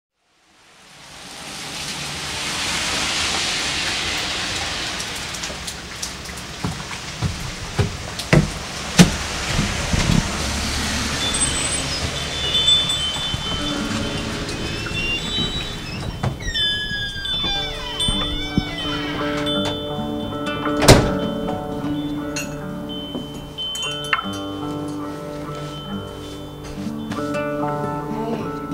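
Sound-collage album intro: a hissing noise fades in, with scattered knocks and clatter and a loud hit about 21 seconds in, while chime-like tones and sustained musical notes build up underneath.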